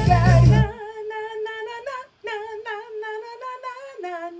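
A song's full mix with heavy bass plays for under a second, then cuts to a soloed female lead vocal take alone, played back from a recording session. She sings held notes with vibrato, with a brief gap about two seconds in.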